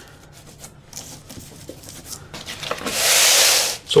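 A reusable baking sheet dragged across a wooden worktop: a loud rushing scrape lasting about a second near the end, after faint rubbing of hands handling dough.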